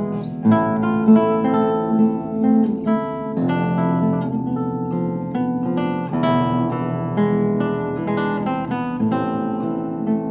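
A 1923 Hermann Hauser I contraguitar, a 15-string classical guitar with spruce top and maple back and sides, being played with the fingers. It gives a continuous run of plucked notes over deep bass, with a second player reaching in to pluck the extra bass strings.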